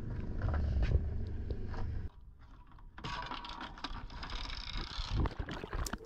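Low rumble on a boat's deck for about two seconds, then a sudden cut to the audio of an underwater camera: water rushing past with bubbles and scattered clicks.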